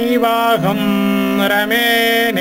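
Sanskrit verses chanted in a sustained, melodic recitation style, each syllable held on a note that glides to the next pitch, over a constant steady drone tone.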